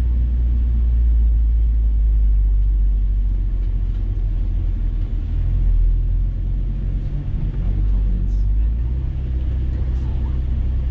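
Engine and road noise heard inside the cabin of a MK5 Toyota Supra with the 3.0-litre turbocharged inline-six, driven at speed around a race track. The low engine drone changes pitch about eight seconds in.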